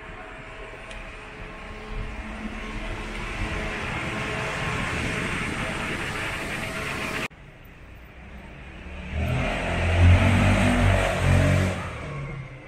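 Street traffic: a motor vehicle passes with a swelling noise that breaks off suddenly about seven seconds in. Then a second, louder vehicle passes with a deep engine rumble near the end.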